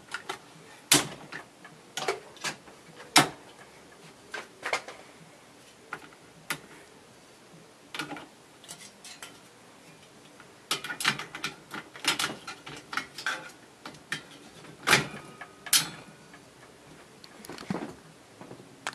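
Clicks and knocks of an EIKI Slim Line 16 mm film projector being set up by hand, as its reel arm is swung up and a large reel is fitted. The sharp clacks come singly at first, then in quicker clusters partway through and again near the end.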